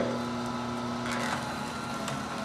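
Omega TWN30 twin-gear cold press juicer running with a steady hum as it crushes wheatgrass being fed into its hopper.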